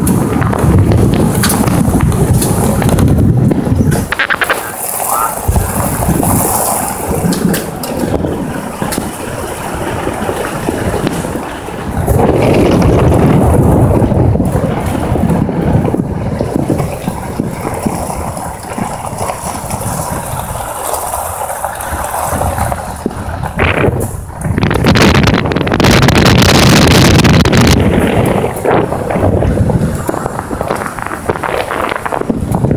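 Wind buffeting the microphone while moving along a paved road, gusting louder and softer, with louder stretches in the middle and near the end.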